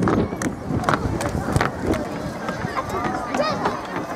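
Distant, indistinct voices of players and onlookers calling out across an open playing field, with a run of wavering calls about two and a half to three and a half seconds in and scattered sharp clicks throughout.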